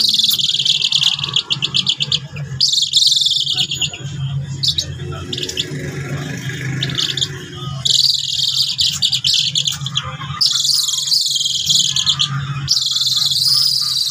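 A hand-held brown eagle calling in bouts of high, rapid chattering, several bouts in a row with short pauses between them.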